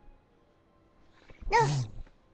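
A child's single short shout of "No!", loud and rising then falling in pitch, about a second and a half in, after a quiet room.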